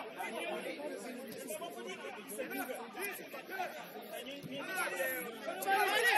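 Overlapping chatter of several voices from players and onlookers at a football match, people talking and calling out at once, growing louder near the end.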